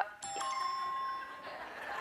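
Electronic chime from the Heads Up game app on an iPad, marking a correct guess. It rings out with a bright ding and fades over about a second.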